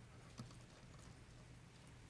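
Near silence: room tone with a faint steady low hum and one faint knock a little under half a second in.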